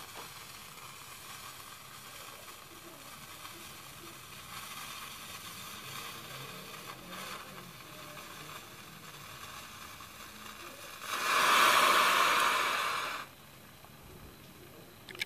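A homemade powder mixture flaring up with a loud hiss about eleven seconds in, lasting about two seconds and cutting off sharply, after a faint steady hiss. It is a failed test burn: the mixture's composition is not right.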